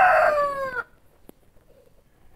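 A rooster crowing: the long drawn-out last note of the crow, held steady, then dipping slightly in pitch before it stops a little under a second in.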